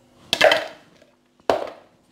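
Kitchenware knocking twice, about a second apart, as a metal spoon and mixing bowl are handled.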